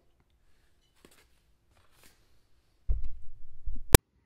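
Near silence with a couple of faint paper rustles from a handled sheet of paper, then about a second of low rumble and a single sharp click just before the end.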